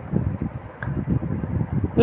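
Low, uneven background rumble with no clear tones.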